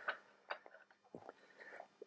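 A few faint, scattered metallic clicks and ticks from working a small hand-lever arbor press as its ram is brought down onto a motor bearing; the clearest click comes about half a second in.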